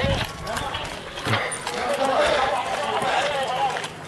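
Hurried running footsteps on a street, with raised voices calling out in the second half.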